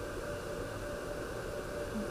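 Steady low hiss of microphone background noise, with no other sound.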